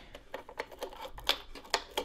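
AA batteries being fitted into the plastic battery compartment of a Lockly smart safe. A few light, irregular clicks and taps, the loudest a little past halfway.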